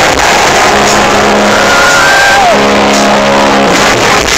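Loud live concert music heard from inside the crowd: held pitched notes over a dense wash of sound, one pitch sliding down about two and a half seconds in.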